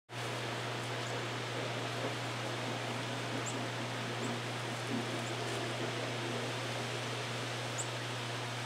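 Outdoor yard ambience: a steady hiss with a steady low hum beneath it, and a few faint, short high chirps of small birds scattered through.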